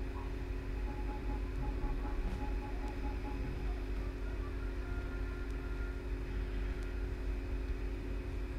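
Steady low background hum and rumble with a faint steady drone, and a few faint scattered ticks.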